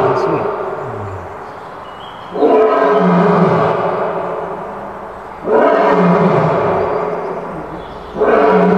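Male lion roaring in long, repeated calls. One call is fading as the clip opens, and two more start about two and a half and five and a half seconds in. Each begins loud and abruptly, then tails off over a few seconds.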